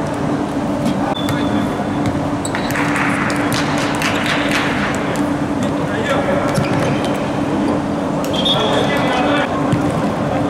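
Live sound of an indoor futsal match in an echoing sports hall: indistinct voices and shouts, with short knocks of the ball being kicked and bouncing on the court floor over a steady low hum.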